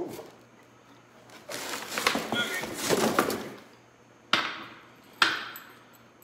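An aluminum motorcycle lift jack being lifted out of its cardboard packing tray, with cardboard scraping and rustling. Then come two sharp knocks, about a second apart, as the metal jack is handled on the floor.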